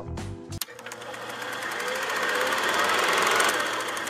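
Rapid, even mechanical clattering of many clicks a second that swells up over about three seconds and then fades.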